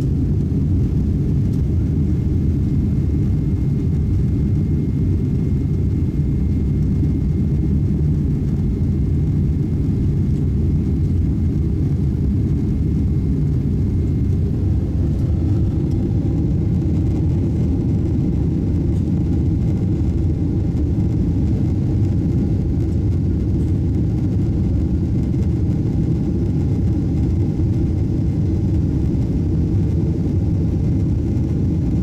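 Steady low roar of a Boeing 777's jet engines and airflow, heard inside the passenger cabin while the airliner climbs after takeoff. A faint higher hum joins the roar about halfway through.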